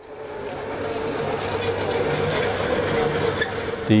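A small three-wheeled cargo vehicle's motor running as it drives up a road. The sound grows louder as it approaches and carries a steady whine.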